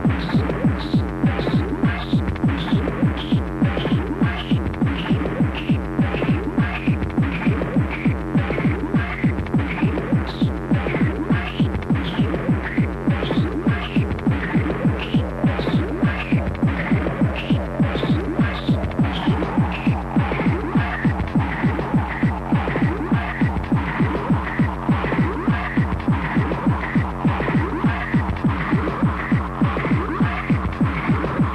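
Hard techno: a fast, steady kick drum with a repeating higher riff over it. About two-thirds of the way through, a held higher note comes in.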